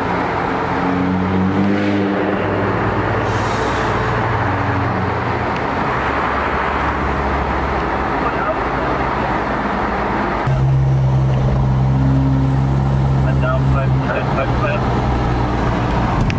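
Steady road noise and a low engine drone heard from inside a car's cabin while driving through a road tunnel. About ten seconds in, the drone gets louder and steadier.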